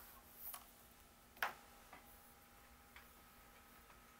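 Near silence: room tone with a faint steady hum and a few light clicks, the sharpest about one and a half seconds in.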